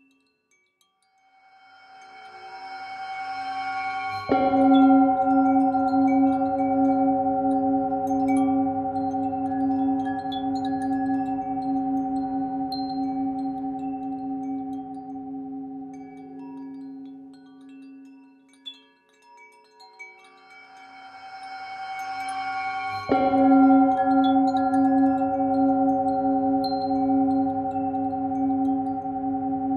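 Tibetan singing bowl struck twice, each time leaving a long ringing tone that pulses slowly as it fades. Each strike comes at the peak of a swelling wash of chime tones, with sparse tinkling of wind chimes over the top.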